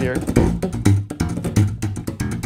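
Zon electric bass guitar slapped with the thumb: a quick run of sharp, percussive strokes over low bass notes.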